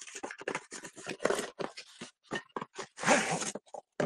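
Cardboard box packaging being opened and handled: a run of irregular crunches, scrapes and clicks, with a longer rustle about three seconds in.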